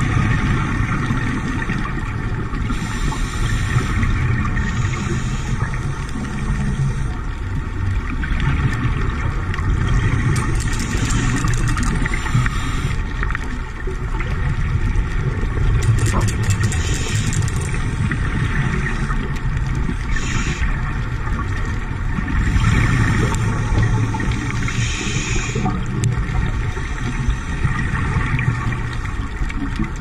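Underwater sound on a scuba dive: a steady low drone with hissing, crackling bursts of a diver's exhaled regulator bubbles every few seconds.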